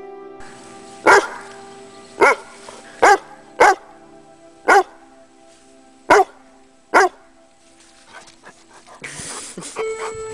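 Newfoundland dog barking seven times, single loud barks spaced roughly half a second to a second and a half apart, over soft background music. A short burst of rustling noise comes near the end.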